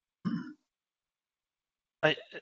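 A short throat clear of about half a second, a moment in.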